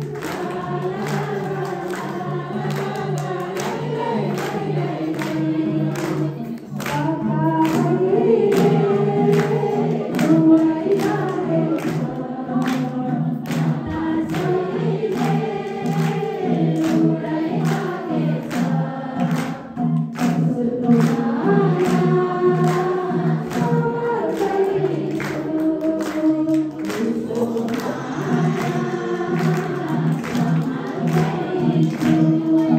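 Women singing a Nepali devotional bhajan into microphones, with the congregation singing along over a steady rhythmic beat.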